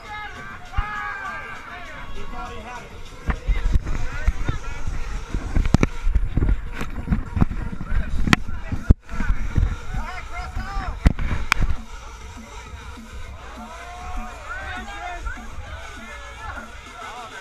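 Crowd chatter with music in the background. From about three seconds in until about twelve seconds, the handheld action camera is jostled and moved, adding rumbling handling noise and a run of sharp knocks and clicks.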